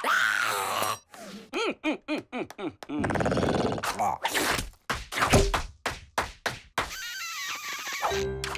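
Cartoon character cries: a gliding scream that stops about a second in, then a string of short squeaky yelps. Near the end comes a quick run of sharp slaps and thuds, then another brief cry.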